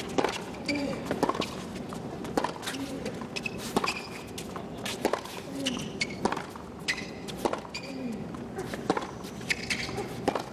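Tennis rally on a hard court: racquets strike the ball back and forth about every second and a quarter, with ball bounces between the shots and short, high shoe squeaks on the court surface.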